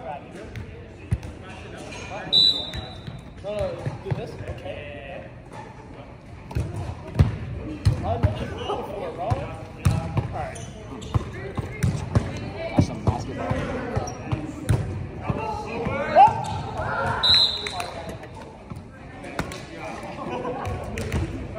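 Volleyball play in a gym: a ball being struck and thudding on the hardwood floor again and again, with players' voices calling out in the echoing hall. Two short high-pitched tones stand out, one early and one near the end.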